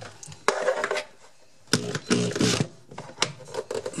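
A few sharp clicks and knocks of a metal wall bracket and its screw being turned and handled against the wooden bookcase, with a short pitched sound about halfway through.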